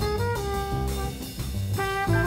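Live jazz: a trumpet plays a solo line of short and held notes over upright bass and drums.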